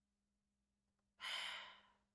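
A person sighs once: a single short, breathy exhale about a second in, fading away, after near silence.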